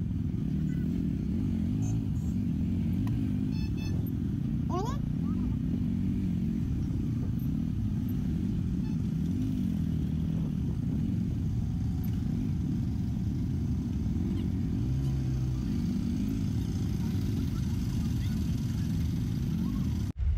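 Motorcycle engine running under the rider, heard muffled, its pitch rising and falling with the throttle. A brief rising whistle-like tone comes about five seconds in.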